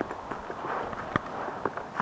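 Footsteps climbing concrete steps strewn with dry leaves: irregular scuffs and crunches, with one sharper click a little past halfway.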